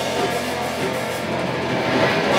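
Live rock band playing electric guitars and a drum kit, in an instrumental stretch without vocals.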